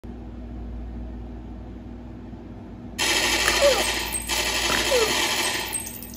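Quiet room tone, then about three seconds in two bursts of rapid gunfire sound, each with a falling whine like a ricochet.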